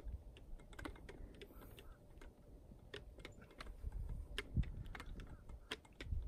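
Light, irregular clicks and clacks from the plates of a Bowflex adjustable dumbbell shifting as it is turned through wrist exercises, over a low rumble.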